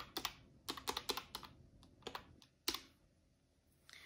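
Plastic keys of a desktop calculator clicking as a subtraction is keyed in: a quick run of presses in the first second and a half, a few more, then one last sharper press nearly three seconds in.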